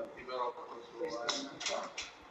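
Speech: people talking in Italian, with no other sound standing out.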